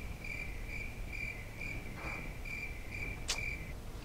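Cricket chirping at a steady rate of about two and a half chirps a second, starting and stopping abruptly. A single sharp click comes about three seconds in.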